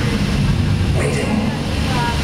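A loud, steady low rumble from the fire-effects show, with indistinct voices over it.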